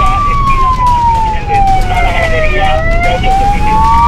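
Fire engine's wailing siren heard from inside the moving truck: the pitch starts high, falls slowly for about two and a half seconds, then rises again. A steady engine and road rumble runs underneath.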